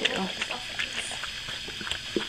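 A mother dog licking her newborn puppy to break open and clear the birth sac: soft, irregular wet licking clicks.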